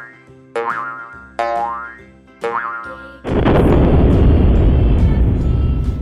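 Cartoon sound effects: short rising zips, about one a second, then a loud, steady rushing noise for the last three seconds.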